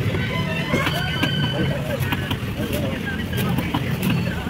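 A knife chopping and slicing through a seer fish on a wooden block, a few sharp strikes, over the steady low hum and voices of a busy market.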